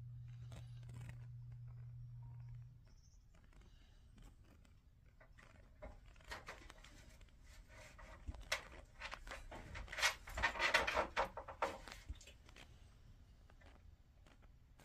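Rapid, irregular scraping and clicking from a muzzled dog nosing into a corner, busiest about ten to eleven seconds in. A steady low hum cuts off about three seconds in.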